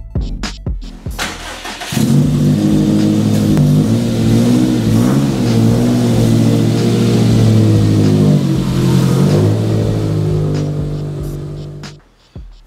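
Subaru WRX STI's turbocharged flat-four engine running, a loud, steady low engine note that starts about two seconds in and fades away near the end. Music plays underneath.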